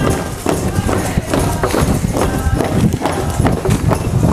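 Steady hand-drum beats, about three a second, with voices singing or chanting over them.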